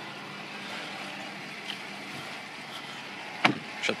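Power-deploying running board on a 2017 GMC Sierra Denali, its electric motor running with a steady low hum after the step button is pressed and stopping about two seconds in. A single sharp click follows about three and a half seconds in.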